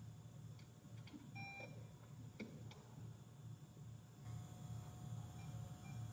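Near silence: faint room hum with a few soft clicks and one short electronic beep about one and a half seconds in.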